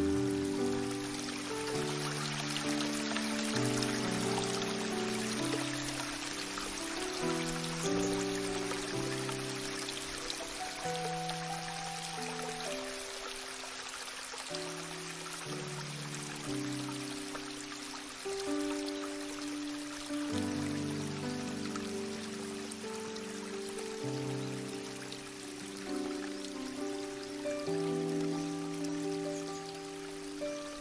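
Slow, calm instrumental music of long held notes that change every second or two, over a steady rush of flowing stream water.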